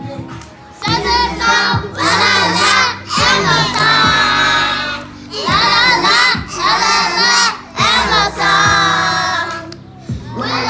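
A group of young children singing and shouting along in loud phrases over a recorded pop song.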